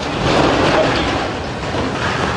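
Continuous rumbling and clattering of a rockslide, with boulders and rock debris tumbling and crashing down a mountainside.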